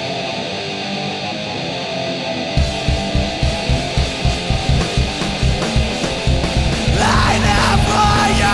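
Heavy rock song: at first without drums or bass, then drums and bass come in about two and a half seconds in with a driving beat of about three hits a second. A sung vocal line enters near the end.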